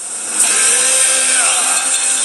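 Trailer sound effect: a swell builds into a sudden hit about half a second in, then a sustained, dense noisy sound with a few gliding tones under it.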